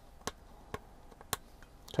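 Four light, sharp clicks spaced roughly half a second apart, over quiet room tone.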